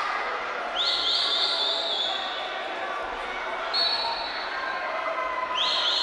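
A referee's pea whistle blowing: one long blast of about a second and a half, a short blast, then another starting near the end, over background voices.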